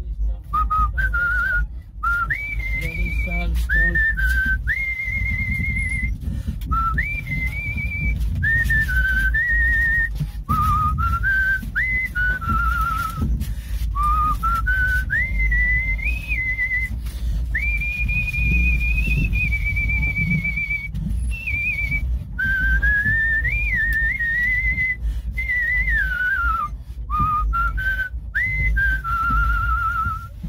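A man whistling a song melody by mouth: one clear, high line that glides up and down between held notes, with short breaks for breath, over a steady low rumble.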